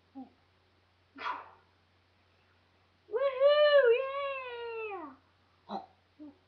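A child's high-pitched hum with the mouth shut, about two seconds long, wavering in pitch and then falling away at the end. Before it comes a short breathy burst, with brief muffled giggles through the nose around it.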